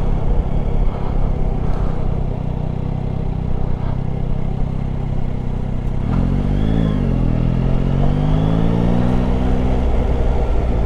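Yamaha Tracer 9 GT's 890 cc inline three-cylinder engine under way, heard from a helmet camera over wind rush. The engine note holds steady, rises and falls briefly about six seconds in, then climbs steadily before dropping sharply at the very end.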